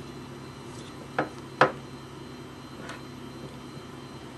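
Two short, sharp clicks about half a second apart, from a skiving knife and leather being handled on a workbench block, over a low steady room hum.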